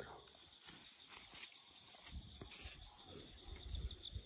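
Faint, irregular footsteps and rustling on dry leaf litter, under a steady high-pitched insect drone.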